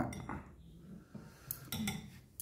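A few faint, light clinks of tableware as a ceramic bowl is handled, spaced out over the second half.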